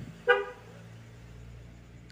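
A single short, high-pitched toot, like a vehicle horn, about a third of a second in, followed by a faint steady low hum.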